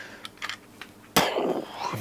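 A few faint clicks of a plastic rotary isolator being handled, then, a little over a second in, a sudden loud breathy exhalation from a man.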